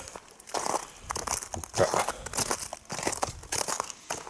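Irregular crunching footsteps on frozen, frost-covered ground, with rustling close to the microphone.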